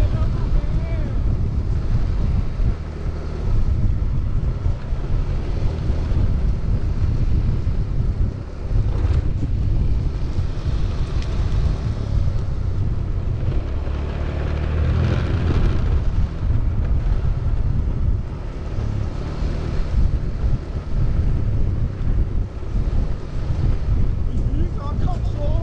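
Steady wind noise on the microphone of a camera moving at skating speed, mixed with the low rumble of inline skate wheels rolling over rough concrete.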